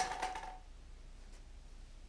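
A plastic lottery ball dropped into a clear upright tube, clacking sharply onto the balls stacked inside with a short ringing and a small bounce about a quarter-second later.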